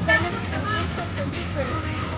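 Several people talking in the background, voices overlapping, over a steady low rumble.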